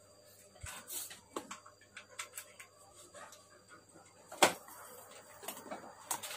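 Faint scattered clicks and knocks from plugs and wires being handled, with one sharp, loud click about four and a half seconds in, over a low steady hum.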